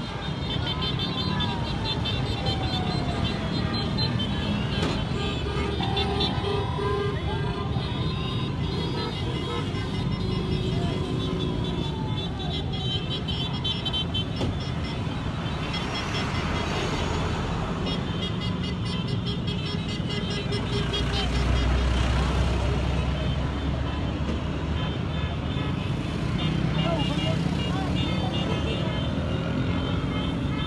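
Steady traffic noise of a long line of motorcycles riding past, with horns tooting and people's voices mixed in. The low engine rumble swells for a few seconds about two-thirds of the way through.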